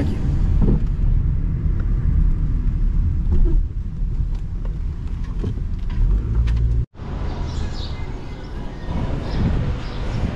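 Car cabin road and engine noise while driving slowly, a steady low rumble. It cuts off abruptly about seven seconds in, and a similar, slightly quieter low rumble of outdoor street noise follows.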